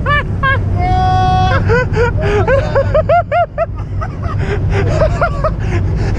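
Several people laughing in quick repeated bursts, with one held high yell about a second in, over a steady low rumble of wind on the microphone.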